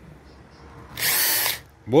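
Electric drill whirring in one short burst, about half a second long, about a second in, as its bit bores into the stern post's rotten timber. The wood is saturated with water all through.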